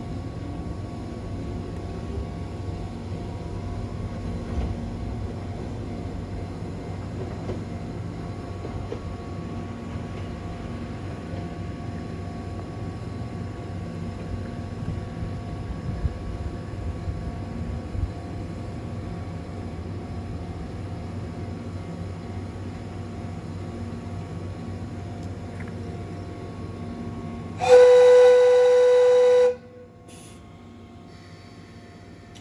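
Steady rumble and hum of the Chichibu Railway Deki 108 electric locomotive and its train, then near the end one loud, single-pitched whistle blast lasting about two seconds that cuts off sharply.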